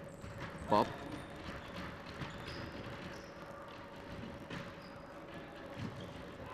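Faint sounds of an indoor futsal game in a sports hall: scattered light knocks of footsteps and ball touches on the wooden court, over a steady thin hum.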